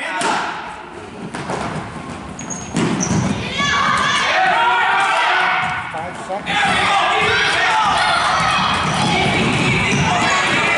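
Basketball bouncing and thumping on a wooden gym floor, echoing in the hall. From about three seconds in, many spectators' voices shout and call over it, much louder than the ball.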